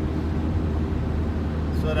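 Steady low drone of engine and road noise inside a moving minibus's cabin, with a man's voice starting near the end.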